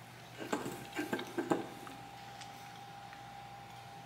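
A few soft clicks and mouth smacks from biting into and chewing a frosted cookie, in the first second and a half. After that only quiet room tone with a faint steady hum.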